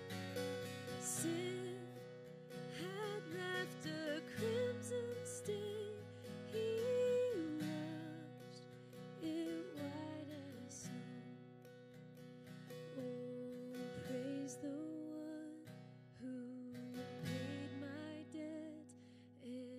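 A woman singing a slow melody with wavering, held notes over a strummed acoustic guitar.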